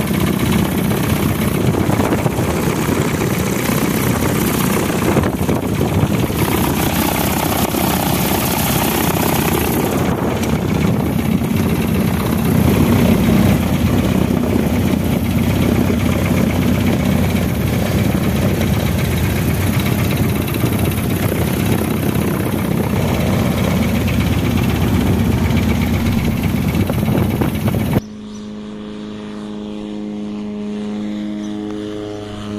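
Ultralight aircraft engine and propeller running loud and steady at high power, heard on board with wind noise during the takeoff run. About two seconds before the end it cuts abruptly to the ultralight's engine heard from the ground as a quieter, steady-pitched drone while it flies overhead.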